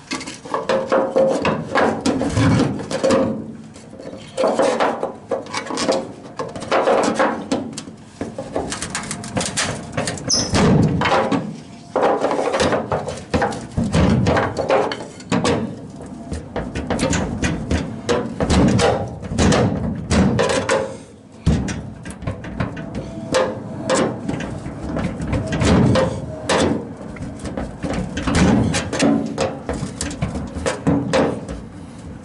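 Steel pry bar clanking and scraping against the sheet metal of an old Ford F100's tailgate and bed as it is levered into a tight gap. The metal knocks irregularly, some knocks ringing briefly.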